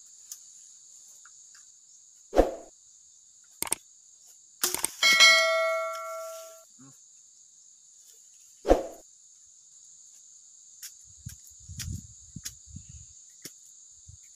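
A bolo machete chopping at bamboo stems: four sharp strikes, one about five seconds in ringing on with a clear metallic tone for about a second and a half. A steady high insect drone runs underneath, with some rustling of brush near the end.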